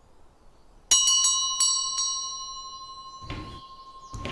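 Wine glasses clinking together in a toast: one sharp clink about a second in, then a few lighter clinks, the glass ringing on and fading slowly. A dull thump near the end.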